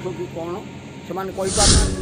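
A short, loud whoosh of hiss about one and a half seconds in, lasting about half a second, that ends right at a cut in the video: a scene-transition sound effect. Brief bits of a man's speech come before it.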